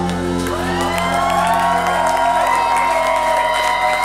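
Live ska band with trumpet and trombone holding long notes over sustained low chords, with cheering and whoops from the crowd.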